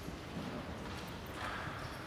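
Pages of a large altar missal being turned by hand, with a short paper rustle about one and a half seconds in over the hum of a quiet, reverberant church.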